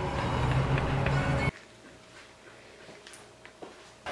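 Steady low rumble of a car's interior that cuts off suddenly about a second and a half in, leaving a faint, quiet room background with a light steady tone.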